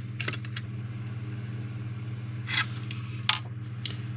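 Handling noise from a plastic trick-or-treat lantern turned in the hand: a few light clicks near the start, a short scrape about two and a half seconds in, and a sharp click a little after three seconds, over a steady low hum.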